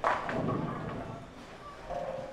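A bowling ball lands on the lane with a sudden thud and rolls away with a low rumble that fades over about a second, over faint background voices.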